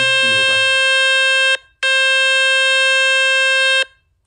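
Speaker-cleaning tone from the Fix My Speaker web page, played on a Vivo Y75 phone: a loud, steady, buzzy tone. It cuts off about a second and a half in, restarts a moment later and stops just before the end. The tone is meant to shake dust and water out of the phone's speaker.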